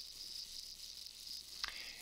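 Faint, steady sizzling hiss of a 7018 stick electrode arc burning in an overhead T-joint, with a small click near the end.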